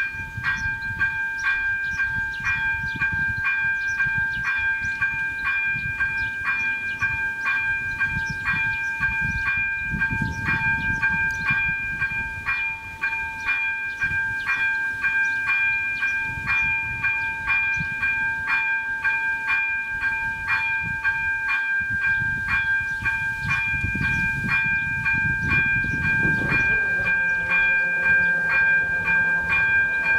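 Railway level crossing's electronic warning bell ringing steadily and rapidly, about two strokes a second. Near the end a low hum joins it as the crossing barriers start to lower.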